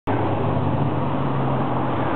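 Steady motor-vehicle noise with a low, even engine hum, which stops at the end.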